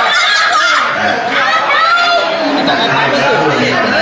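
Several people shouting over one another in a heated confrontation, with a woman yelling loudly at the front.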